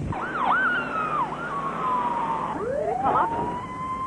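Emergency vehicle siren: a few quick up-and-down sweeps, then a long falling wail, then a slow rise starting about two-thirds in that levels off into a steady held tone.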